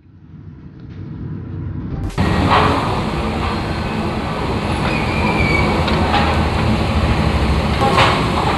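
Low road rumble inside a moving car, growing louder, then an abrupt change about two seconds in to a loud, steady noise at a roadside charcoal kebab grill: the electric blower fanning the coals, with street traffic around.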